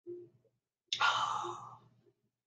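A man's long, breathy sigh of satisfaction ("ahh") after a sip of a warm drink, starting about a second in and fading away, with a short faint hum just before it.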